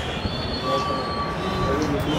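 Open-air noise with wind rumbling on the microphone. A thin, steady whistle-like tone holds for about a second in the middle.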